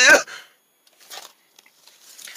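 A voice trailing off at the very start, then a few faint, brief rustles of plush toys being handled.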